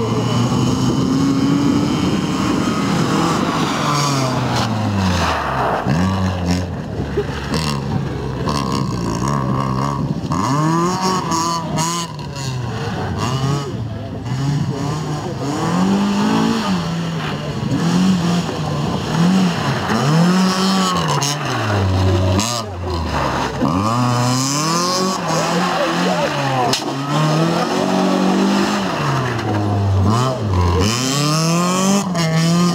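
FSO Polonez Caro rally car's engine revving hard and falling back again and again, over and over in quick succession, as it is driven flat out between bends with gear changes and lifts off the throttle.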